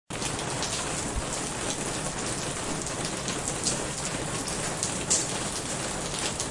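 Steady rain falling, an even hiss with scattered individual drops ticking through it.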